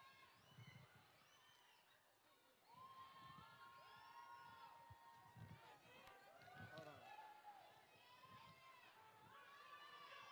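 Faint, distant chatter of a crowd of many overlapping voices, dropping out briefly about two seconds in.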